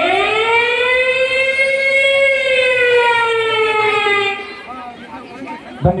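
A single long held note of music over loudspeakers. It swoops up in pitch at the start, arches slowly and fades out after about four seconds, with a voice just at the end.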